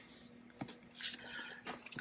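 Soft rustle of paper and a few faint taps as a spiral-bound paper planner is handled and laid flat, the rustle about a second in.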